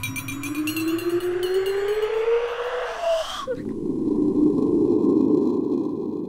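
A ghostly wail rising steadily in pitch for about three seconds and cutting off suddenly, followed by a breathy rushing noise that swells and then fades.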